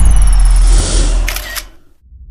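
Camera sound effect in an intro animation: a loud low rumble and rush with a high whine falling in pitch, then a quick run of shutter-like clicks about a second and a half in, fading out near the end.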